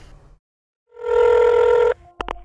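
A telephone line tone played as a sound effect: one steady beep about a second long, starting about a second in.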